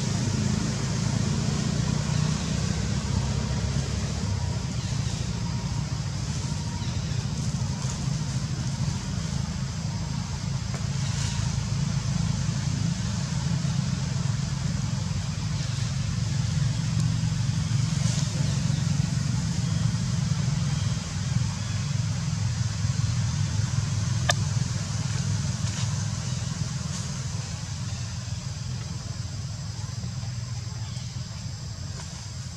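A steady low rumble of background noise, with an even high hiss above it and a few faint brief sounds.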